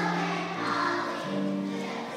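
A children's choir singing together in long held notes, heard from the audience seats of a large hall.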